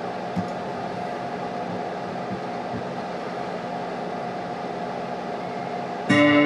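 Steady hum and hiss from an idling electric guitar rig while the guitar is not being played, with a faint held tone and a light click about half a second in.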